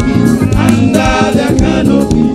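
A gospel song sung by many voices together, in praise-and-worship style, over a band with a steady beat.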